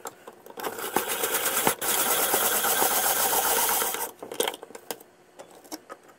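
Hand-crank vegetable spiralizer cutting a raw sweet potato into spirals: a fast, rhythmic rasping crunch that builds up in the first second and stops abruptly about four seconds in. A few light clicks and taps follow.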